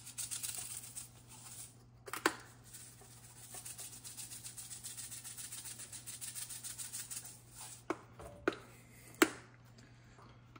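Plastic shaker of ranchero seasoning being shaken over raw ribs, the granules rattling in rapid, even shakes. Near the end come a few sharp knocks as the shaker and ribs are handled.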